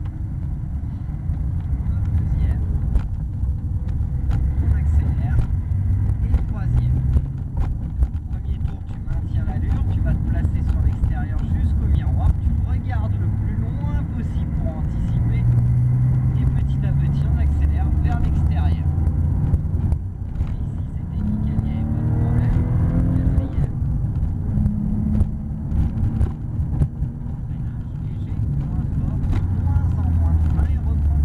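Porsche 911 GT3 flat-six engine heard from inside the cabin, accelerating hard through the gears on a track lap. Its pitch climbs and drops back at each gear change.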